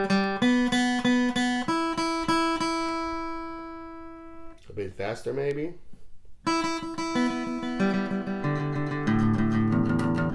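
Steel-string acoustic guitar flatpicked with a pick, one note at a time at an even pace. After a couple of seconds the strings are left ringing and fade out. Picking starts again about six and a half seconds in.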